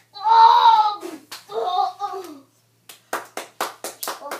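A loud shout, then a second, shorter vocal sound. Near the end comes a quick run of about six sharp hand claps in under a second.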